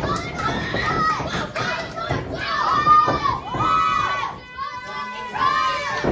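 Children in a small crowd shouting and calling out, several high voices overlapping one after another.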